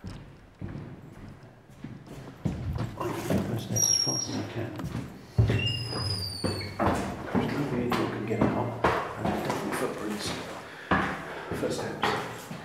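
Hurried footsteps climbing stairs with heavy breathing, the steps irregular and knocking, growing louder about two and a half seconds in.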